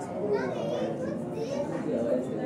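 Crowd chatter: many voices talking at once, with a child's high voice rising above them about half a second in.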